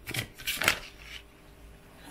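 A deck of large oracle cards being shuffled by hand: a few quick papery strokes in the first second, then quieter handling of the cards.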